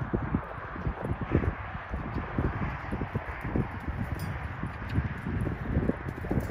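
Hooves of a ridden horse thudding in deep sand as it moves around the pen, uneven muffled thuds about two to three a second.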